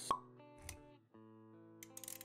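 Animated intro sting: a sharp pop sound effect right at the start, a short low hit a little over half a second later, then the music cuts out for a moment and comes back with held notes about a second in.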